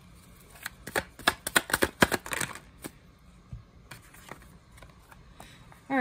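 A deck of tarot cards being shuffled by hand: a quick run of sharp card snaps and flicks between about one and three seconds in, then a few single clicks.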